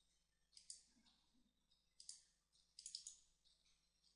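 Faint clicks of a computer mouse over near silence, in three small clusters: around half a second, two seconds and three seconds in.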